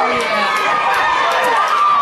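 Spectators shouting and cheering, many voices at once, while a ball carrier breaks loose on a long run.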